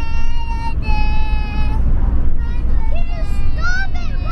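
A young child singing loudly in long, high held notes, each lasting about a second, with a pause around the middle and shorter notes that rise and fall near the end. A steady low rumble from the moving car's cabin runs underneath.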